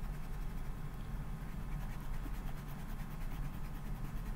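Pencil eraser rubbing on notebook paper, a faint scratchy scrubbing over a steady low hum.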